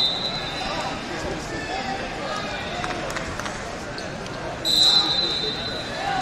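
Large gym hall full of voices from coaches and spectators, with a shrill referee's whistle held for a second or more. It ends just after the start and sounds again near the end, both loud and steady.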